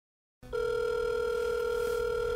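Telephone ringback tone on the caller's line: one steady ring tone about two seconds long, starting about half a second in, as an outgoing call rings through.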